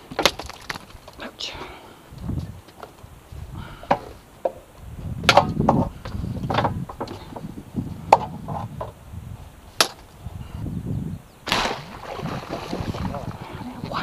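Scattered sharp knocks and clatter, with low thuds and rustling, as a bowfishing arrow and a freshly shot gar are handled over a bucket on a boat deck.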